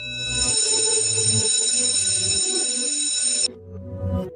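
Electric school bell ringing continuously for about three and a half seconds, then cutting off suddenly.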